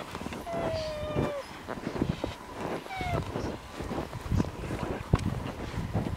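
Skis swishing and crunching through deep snow in uneven strides, with a couple of short squeaky tones in the first half.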